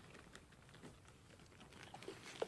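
Near silence with faint, scattered light clicks and rustles of goats moving and nibbling in straw bedding.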